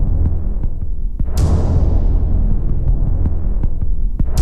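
Dramatic suspense background score: a deep, throbbing low drone, with a sudden whooshing hit about one and a half seconds in that fades away.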